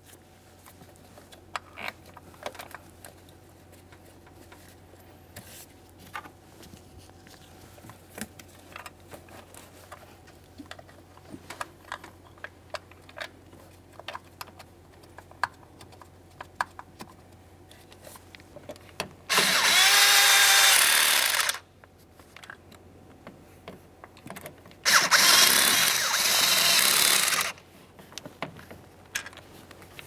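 Power tool spinning down the two mounting bolts of a vapor canister purge solenoid valve: two steady runs of about two and a half seconds each, some three seconds apart, each stopping sharply as the bolt snugs up. Before them, faint clicks and taps of the bolts being started by hand.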